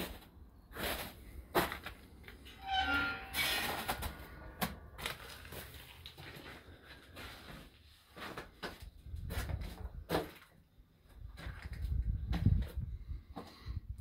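A metal barred gate squeaking briefly on its hinges as it is swung open, about three seconds in, amid scattered knocks and low handling rumble.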